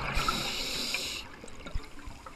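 Scuba diver exhaling underwater through an Aqua Lung regulator: a burst of bubbles rushes out of the exhaust for about a second, then stops. A short soft thump follows near the end.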